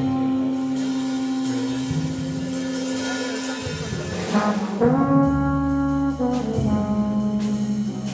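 Trombone playing a slow jazz melody in long held notes, with upright bass and drums behind it. A note is sustained through the first three seconds or so, and after a short break a new phrase starts about five seconds in.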